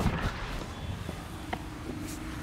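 A person shifting across a leather car seat and climbing out through an open rear door: faint rustling with a few light knocks.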